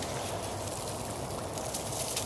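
Steady, low outdoor background noise with faint rustling.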